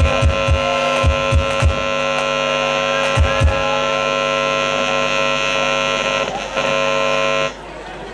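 Live ranchera band: a button accordion holds one long sustained chord while an electric bass plucks a few low notes early on and again about three seconds in. The chord cuts off sharply near the end.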